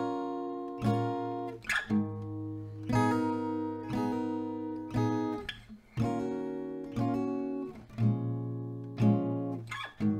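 Steel-string acoustic guitar, capoed at the first fret, strummed in slow minor-seventh barre chords (G minor 7, A minor 7, D minor 7). There is about one strum a second, each chord ringing out and fading, with a few quick double strums and short damped gaps between.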